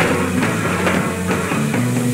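Rock band playing live in an instrumental passage, with drum kit and electric guitars. Drum strikes land about twice a second under sustained guitar and bass notes.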